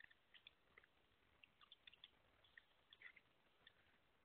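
Faint computer keyboard typing: a quick, irregular run of soft keystroke clicks.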